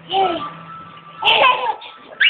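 A toddler's voice making two short babbling vocal sounds, the first sliding up and down in pitch right at the start and the second about a second later, over a faint steady hum.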